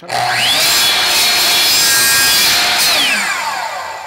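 Sliding compound miter saw: the motor starts with a rising whine, the blade cuts through plastic electrical conduit, and then the trigger is released and the motor winds down with a falling whine near the end.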